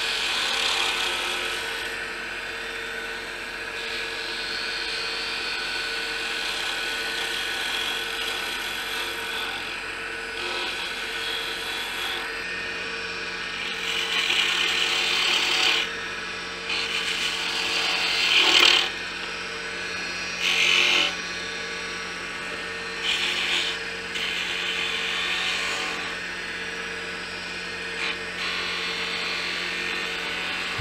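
Wood lathe running with a turning tool cutting the spinning wood blank: a steady motor hum under a hissing scrape of the cut. Several louder, short cutting passes come in the second half.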